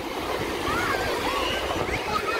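Small waves washing in the shallows with wind rumbling on the microphone, and high voices calling and shouting over it.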